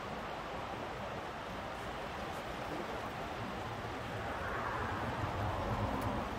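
Steady rushing background noise with no distinct events, growing slightly louder in the last couple of seconds.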